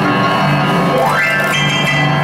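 Upright piano being played live, with sustained chords and notes and a high tone that slides upward about a second in.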